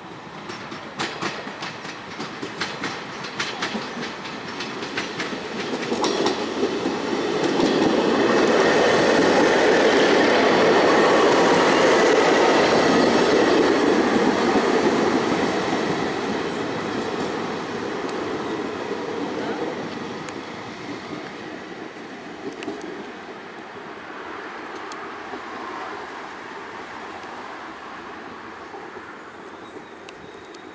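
Koleje Śląskie SN83 diesel railbus approaching with its wheels clicking over rail joints and points. It is loudest as it passes close by, about eight to fifteen seconds in, then fades as it pulls away along the platform.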